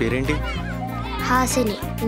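A young girl speaking over background music with low held tones.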